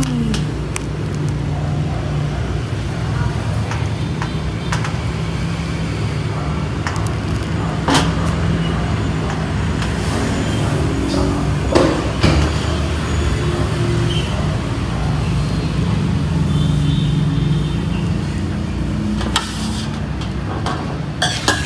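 A steady low hum runs throughout, with a few sharp clicks and knocks as a durian's spiky husk is pried apart over a stainless steel tray. The loudest click comes about eight seconds in, and two more come close together around twelve seconds.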